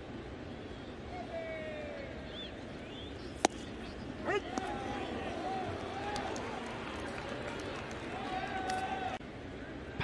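A single sharp pop of a pitched baseball into the catcher's mitt about three and a half seconds in, over steady ballpark ambience. Distant voices call out in the sparse stadium just before and after it.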